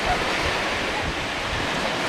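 Steady rushing noise of surf and wind on a beach, with irregular low buffeting of wind on the microphone.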